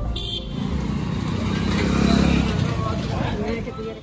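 Busy street traffic, motorbikes and cars, with people's voices mixed in; it dies down near the end.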